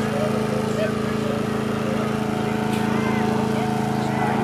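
A small engine running steadily at a constant speed, with faint voices of people in the background.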